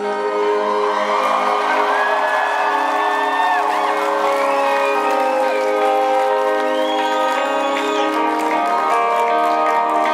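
A live rock band playing sustained chords, heard from among the crowd, with the audience cheering and whooping over the music.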